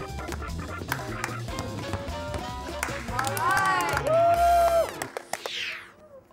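Background music with drums and a steady bass line; about three seconds in a held, wavering vocal-like line rises over it, and the music ends in a falling whoosh that fades out near the end.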